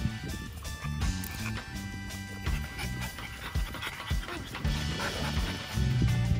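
Background music with a repeating low bass line, with a French bulldog's panting faintly beneath it.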